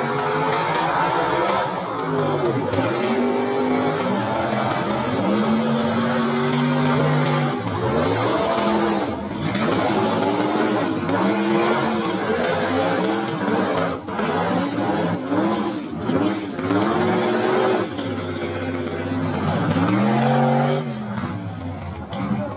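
Mud-racing trucks' engines revving hard, their pitch climbing and dropping again and again, with a few sharper noise bursts along the way.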